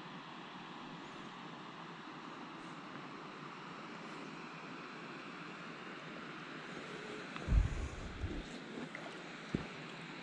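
Faint steady swish of water and light wind around a packraft being paddled on calm water. A brief low thump about seven and a half seconds in, and a single sharp knock near the end.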